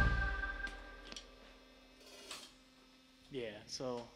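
A live rock band's last chord, electric guitar and amp tones, ringing out and fading away over about a second, then near silence. A person's voice sounds briefly near the end.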